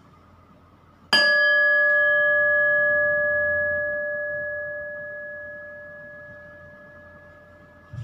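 A metal bell struck once about a second in, ringing with several clear tones that die away slowly over the next seven seconds. A soft knock near the end.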